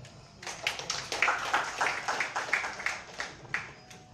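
A small audience clapping: scattered, distinct hand claps that start about half a second in and die away near the end.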